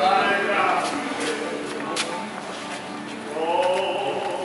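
A man's voice between phrases of a song, with a sharp click about halfway through; the next sung phrase rises in near the end.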